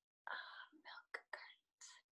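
Faint whispered speech: a few quick, unpitched syllables lasting about a second and a half.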